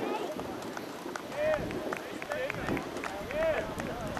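Distant young voices shouting and calling across the field in short rising-and-falling calls, with a few scattered claps.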